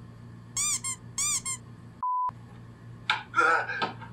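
Two quick pairs of high, pitch-arching squeaks, then a short steady beep during which all other sound is cut out, as in a censor bleep. A voice follows near the end.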